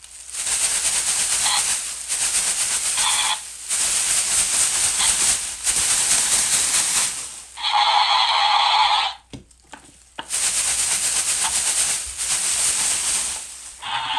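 Crinkly rustling of metallic foil cheer pom-poms shaken close to the microphone, in bursts of one to three seconds with short breaks. A louder buzzing sound of about a second and a half comes in the middle.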